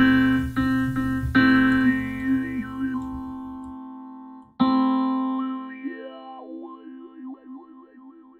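Sustained keyboard chords from Reason's ID8 sound module played through the Thor synth's formant filter, struck several times in the first second and a half and again about four and a half seconds in, each fading slowly. In the second half the tone wavers up and down as the formant filter's X-Y pad is moved.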